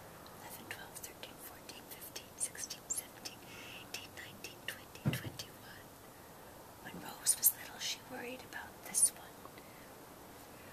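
A woman whispering softly, scattered hissy 's' sounds with little voice behind them.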